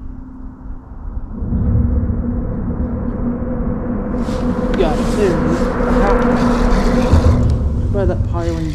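Vehicles crossing the highway bridge overhead: a low rumble with a steady hum that builds about a second and a half in and holds, with a brighter hiss of tyres joining about four seconds in.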